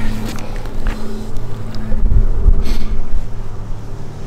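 A motor's steady low hum, with gusts of wind rumbling on the microphone, loudest about two seconds in.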